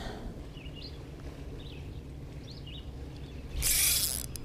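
Spinning reel being cranked, a low steady whirr, with a few faint high chirps above it. Near the end comes a sudden loud rush of noise as the rod is swept back to set the hook on a fish.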